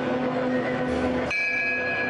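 A metal bell struck once, a little past halfway, its ringing tones hanging on afterwards. Before it there is a steady held tone over the murmur of a crowd in a large church. On a Málaga-style procession throne, such a bell is the signal to the bearers.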